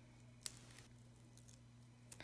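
Near silence with a low steady hum, and one faint click about half a second in as paper and foam tape are handled.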